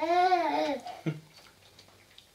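A man's short hummed 'hmm', its pitch rising then falling, lasting under a second, followed by faint ticking.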